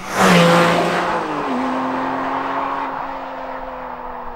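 Porsche 718 Cayman GT4's naturally aspirated four-litre flat-six driving past at speed, loudest just after the start. Its engine note drops in pitch about a second and a half in, then holds steady as it fades with the car driving away.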